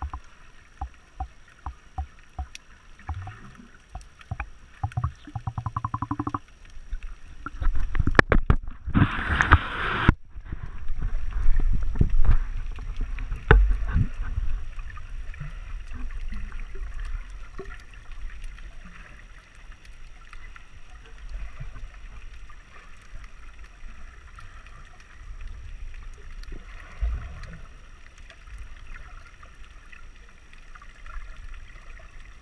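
Muffled underwater sound from a GoPro in its waterproof housing: scattered clicks and knocks and a low rumbling wash of moving water. A louder rush of water noise lasts about a second and a half, starting a little over eight seconds in.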